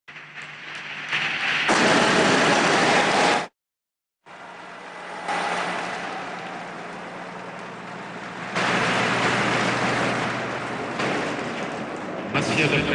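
Audience applauding in a large hall. The applause swells louder twice and breaks off completely for a moment a little over three seconds in.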